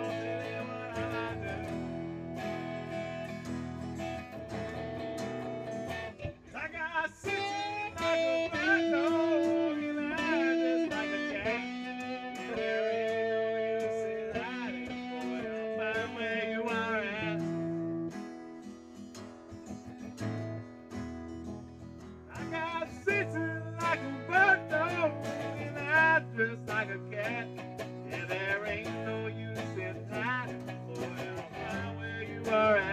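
Guitar music from a blues-style jam: chords played steadily, with a wavering lead line over them that comes in about seven seconds in, drops out a little past the middle and returns a few seconds later.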